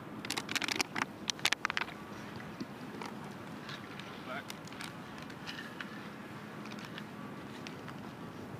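Outdoor background noise with voices murmuring in the background, and a quick run of sharp clicks in the first two seconds.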